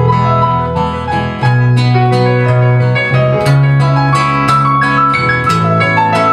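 A live folk band plays an instrumental passage with no vocals: acoustic and electric guitars pick quick plucked notes over held bass notes.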